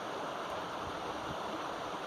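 Steady outdoor background noise: an even rushing hiss with no distinct events.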